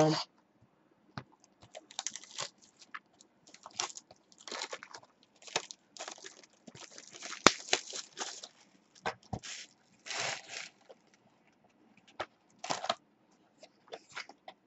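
Plastic shrink-wrap being torn and crinkled off a cardboard box of trading cards, in irregular rips and crackles with short pauses and one sharp click part-way through.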